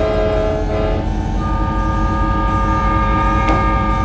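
A steady film-soundtrack drone: several held tones over a deep, continuous rumble, with a higher tone coming in after about a second and a half.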